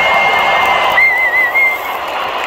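Large stadium crowd cheering, with one loud, piercing whistle held steady over the noise, breaking into a warbling trill about a second in and ending on a short final note.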